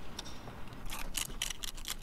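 A quick run of light clicks or scrapes, about seven or eight in a second, starting about a second in.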